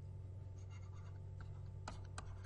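Faint taps and light scratches of a stylus writing on a tablet, a few small clicks spread through the stretch, over a low steady hum.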